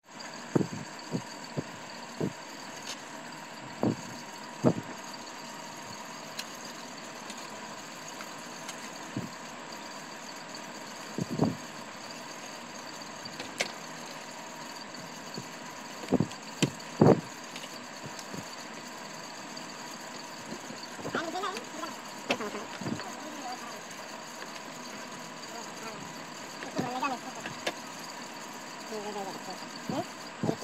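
Steady electrical hum with a high whine, under scattered knocks and clicks of a TV mainboard and tools being handled on a wooden workbench. Faint wavering voices come in a little after the middle and again near the end.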